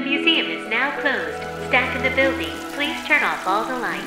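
Cartoon soundtrack: background music with a string of sliding, falling tones over steady held notes and a low hum, and a short spoken 'Oh' near the end.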